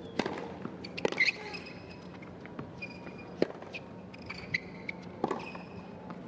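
Tennis rally on a hard court: sharp racket-on-ball hits about once a second, starting with the serve, with brief high squeaks between shots.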